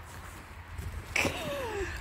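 A woman's laugh, one voiced cry falling in pitch about a second in, over a low steady rumble.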